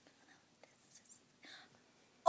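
Near silence: room tone with a few faint clicks and a soft whisper near the end.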